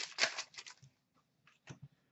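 Stack of 2014-15 Upper Deck Artifacts hockey cards being slid and flicked through by hand: a few quick rustles in the first second, then two light clicks near the end.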